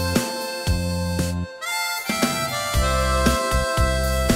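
Instrumental break in a schlager song: a harmonica plays the melody over bass and backing. The music drops out briefly about one and a half seconds in.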